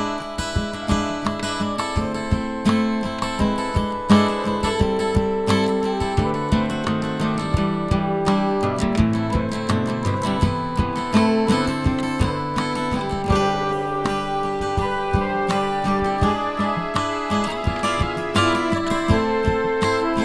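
Acoustic guitar music, a continuous run of plucked notes and chords.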